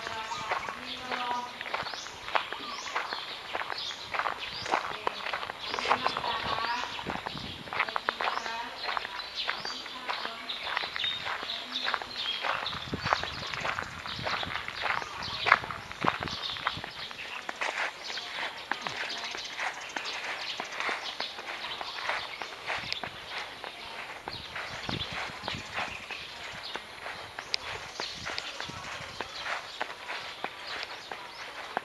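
Footsteps of a person walking outdoors, about two steps a second. Snatches of distant voices can be heard in the first half.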